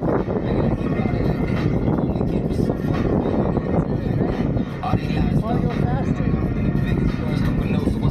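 Steady, rumbling wind and road noise from riding an electric unicycle along a concrete path, with air buffeting the camera microphone.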